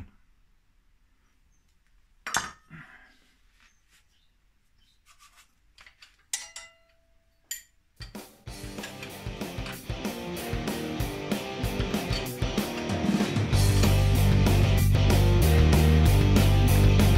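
A few sharp metallic clinks and a knock, one clink ringing briefly, from tools and engine parts being handled. About halfway through rock music comes in and builds, much louder with a heavy beat near the end.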